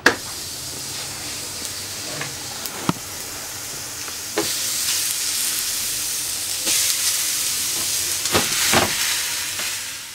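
Food sizzling as it fries: a steady hiss with scattered pops and crackles, louder from about four seconds in and fading near the end.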